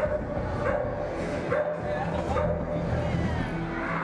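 A dog barking repeatedly, short barks coming about once a second, over background music.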